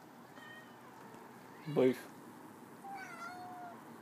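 Domestic cat giving one soft meow about three seconds in, its pitch dipping and then holding level; a person says a short word just before it.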